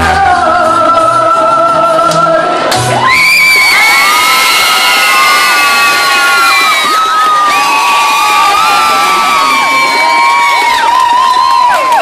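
A live song ending on a held sung note over bass, then an audience cheering and whooping.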